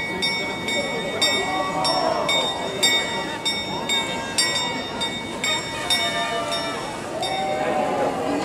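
The small bell of the Prague astronomical clock, rung by its skeleton figure during the apostles' procession, strikes steadily about twice a second. Each strike leaves a short ringing tone. Crowd chatter runs underneath.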